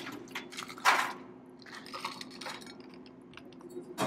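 Ice cubes dropped into a Collins glass of cocktail, a short rattle about a second in followed by scattered light clinks.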